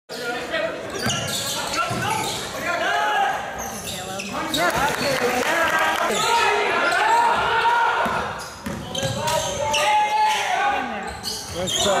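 Basketball game sounds in a gym: the ball bouncing on the hardwood court and players' voices calling out, echoing in the large hall.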